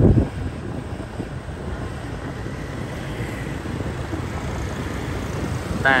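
Wind noise on the microphone with a steady low rumble of travelling along a street.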